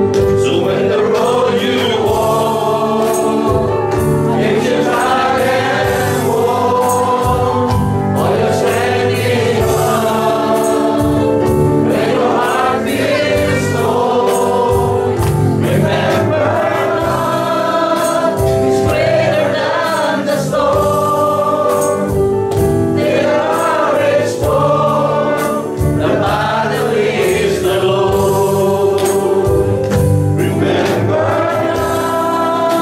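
A church congregation singing a worship song together, the melody held over steady low accompanying notes without a break.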